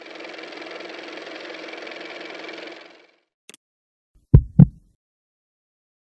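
Sound design of an animated logo sting: a steady, grainy, engine-like hum for about three seconds that fades out, a faint click, then two deep booming hits in quick succession, the loudest sounds.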